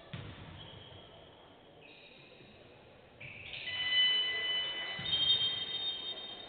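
Several steady high-pitched ringing tones overlapping and shifting in pitch, growing louder from about three seconds in, with a dull low thump at the start and another near the end.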